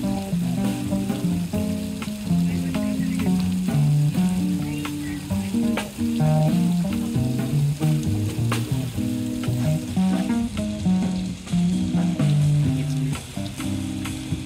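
Live jazz combo playing: electric guitar lines over walking upright bass and a drum kit, with the tenor saxophone silent. A steady hiss runs under the band.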